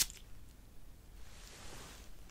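Cologne spray bottle spritzed once: a sharp click right at the start, then a faint, soft hiss of spray from about a second in.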